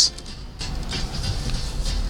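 2009 Ford Crown Victoria Police Interceptor's 4.6-litre V8 running with the car moving slowly, heard from inside the cabin as a low steady rumble.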